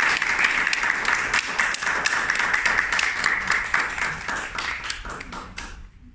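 Audience applauding, a dense patter of hand claps that thins out and stops near the end.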